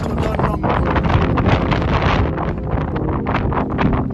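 Wind buffeting the phone's microphone in uneven gusts, with a steady low hum underneath.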